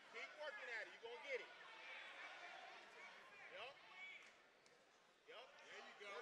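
Faint voices from the crowd and corners shouting at ringside during a boxing bout, with a few light thuds.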